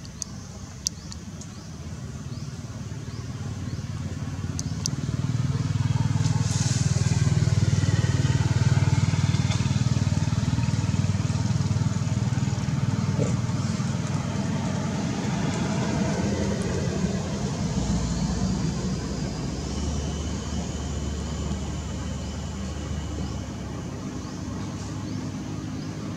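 Motor vehicle engine running nearby, growing louder over several seconds and then slowly fading as it passes.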